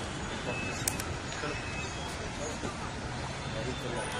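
Steady outdoor background noise with faint distant voices and a single sharp click about a second in.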